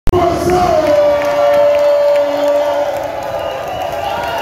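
A man's long drawn-out rallying shout through a microphone and PA, one held note lasting about two and a half seconds and slowly falling in pitch, with a crowd cheering and shouting along.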